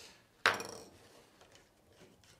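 A single sharp clink about half a second in, with a short ring, during hand saddle stitching of leather; it fades into faint handling noise.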